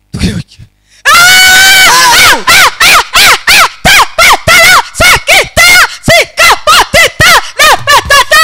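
A woman screaming into a microphone over a PA system. About a second in she lets out one long high scream, then breaks into rapid shouted syllables, about three a second, loud enough to peak at full scale.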